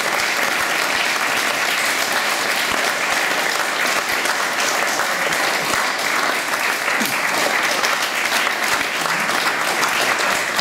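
Audience applauding: dense, steady clapping from many hands.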